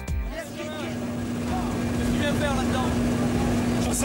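Background music cuts off about half a second in, giving way to the steady drone of a small jump plane's engine heard inside the cabin, with a steady low hum tone running through it.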